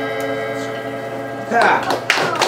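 The jazz quintet's final chord rings out and fades away; about one and a half seconds in, the audience breaks in with whoops and cheers as applause begins.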